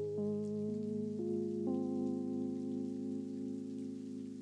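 Soft background music of sustained chords. The notes shift four times in the first two seconds, then one chord is held and fades slightly.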